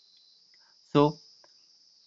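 A faint, steady, high-pitched hiss runs under a pause in speech, with one short spoken word about a second in.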